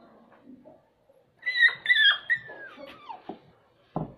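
Dog giving a run of high-pitched whimpering cries while being injected in the flank. The cries start about a second and a half in and end in a falling whine.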